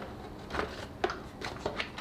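A handful of faint, short clicks and knocks from hands working at the top of a Volvo B5254T engine's timing belt area, taking off the upper camshaft belt cover.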